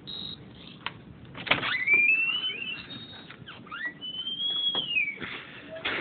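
A door opening: a couple of latch clicks, then its hinges giving two long high-pitched squeaks that glide up and then down in pitch.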